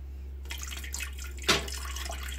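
Water splashing and swirling in a toilet bowl, with one sharp tap about a second and a half in.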